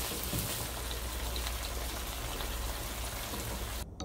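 Ground meat and taco sauce sizzling in a nonstick frying pan while being stirred with a silicone spatula, a steady hiss that cuts off suddenly near the end.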